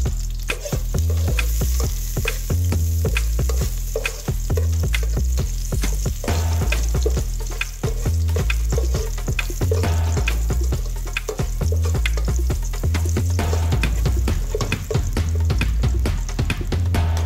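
Chopped garlic sizzling in oil in a stainless steel pot as it is stirred with a spatula, with small clicks and scrapes of the spatula on the pot. Background music with a deep, repeating bass line plays throughout and is the loudest thing at the bottom end.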